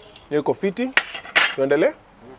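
Metal cutlery clinking and scraping against plates during a meal: a few sharp clinks mixed with pitched scraping squeaks that slide up and down.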